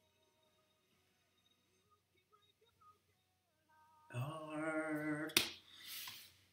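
Near silence with faint music tones, then about four seconds in a man's voice holds one note for just over a second, ending in a single sharp click.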